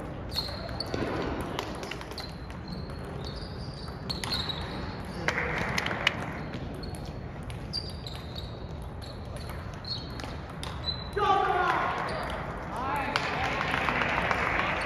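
Table tennis rally: a celluloid-type ping-pong ball clicking off rubber paddles and the table in a run of sharp, high ticks, about one every half second to a second, with hall echo.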